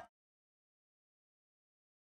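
Complete silence: the soundtrack has faded out to nothing.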